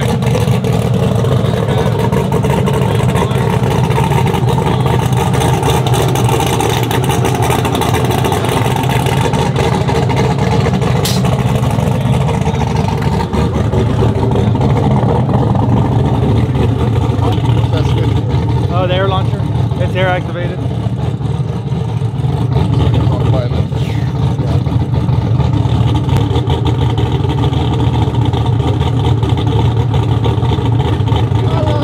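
Twin-turbo LSX V8 of a drag-race Chevy Silverado 1500 idling steadily, its sound sitting low and even throughout.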